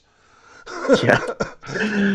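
A man's voice: after a brief near-silent moment, a short throaty vocal noise and a quick 'yeah'.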